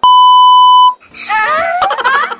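A loud, steady test-tone beep, the kind played over colour bars, lasting just under a second and cutting off suddenly. Then a high voice slides up in pitch twice.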